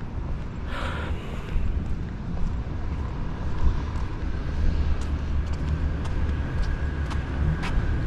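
Outdoor ambience on an open rooftop: a steady low rumble of wind on the microphone over faint distant road traffic, with a brief swell about a second in.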